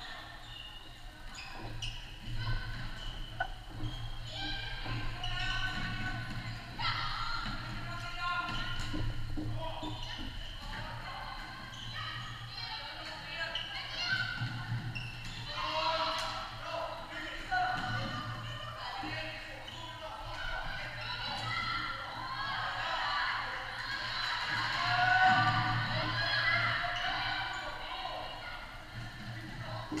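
Floorball game sounds echoing in a large sports hall: shoes squeaking on the court floor, sticks and ball clicking, and players calling out. A steady low hum runs underneath.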